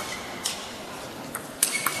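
Celluloid table tennis ball striking the table and bats in a rally: about five sharp clicks with a light ping, unevenly spaced, the last three coming close together near the end.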